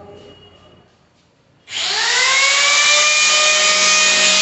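An electric power tool switched on about two seconds in: its motor whine rises quickly to a steady pitch, then runs loud and steady with a strong hiss.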